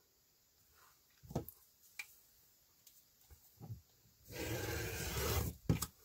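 A few light taps as the acrylic ruler is set on the folded fabric, then a rotary cutter drawn along the ruler's edge, slicing through the fabric layers onto the cutting mat for about a second from about four seconds in, and a short knock just before the end.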